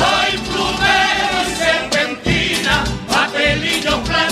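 A Cádiz carnival street group singing a song together in chorus, with a rhythmic accompaniment under the voices.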